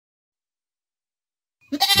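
Silence, then near the end a goat starts bleating loudly.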